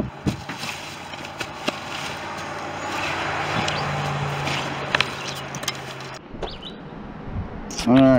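Knocks and rustles of fishing gear being handled at a pickup truck's bed, over a steady low hum and a rushing noise that swells in the middle and cuts off abruptly near the end.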